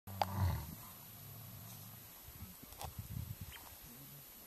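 Male lion vocalising: a deep call about half a second in, then a run of short low grunts a little past the middle.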